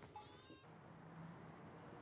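Near silence: faint outdoor ambience with one brief, faint animal call in the first half-second.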